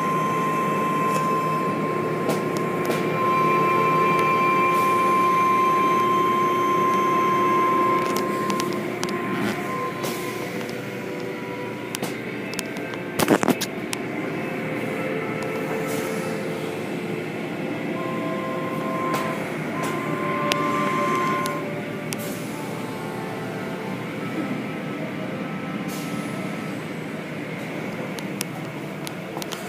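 Automatic car wash machinery running: cloth wash strips and brushes slapping and rubbing over the car amid water spray and motor rumble. A steady whine runs through the first several seconds and returns past the middle, and a sharp knock about halfway through stands out as the loudest sound.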